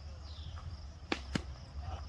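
Two sharp knocks about a quarter of a second apart, a little past halfway, over a steady low background rumble.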